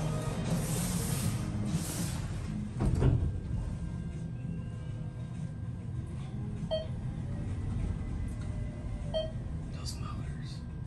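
ThyssenKrupp Evolution 200 machine-room-less traction elevator: the car doors slide shut with a thud about three seconds in, then the car travels down with a low hum and a faint steady whine. Two short chimes sound about two and a half seconds apart as it passes and reaches floors.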